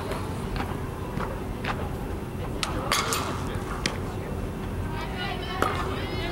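Indoor softball dome ambience: a steady low rumble with a few short, sharp knocks and clicks, the loudest about three seconds in.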